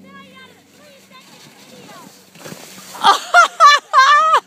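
A young child's high-pitched shrieks: about four short, loud bursts with gliding pitch near the end, after fainter children's voices earlier.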